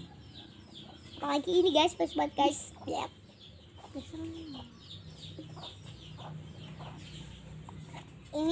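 Chickens clucking, with a short falling call about four seconds in, and a child's voice cutting in loudly for a couple of seconds near the start.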